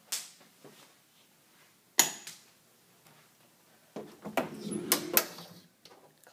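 A closet door being handled and opened: a sharp knock about two seconds in, then a couple of seconds of rattling with sharp clicks near the end.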